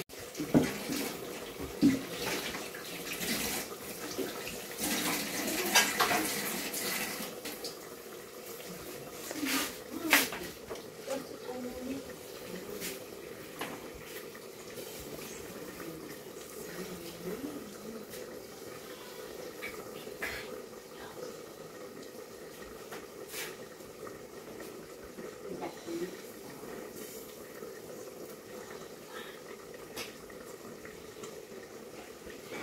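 A few knocks and clinks of glass and plastic being handled in the first ten seconds or so. Then a quiet, steady trickle as runny uruçu stingless-bee honey is poured from a plastic jug into a glass bottle.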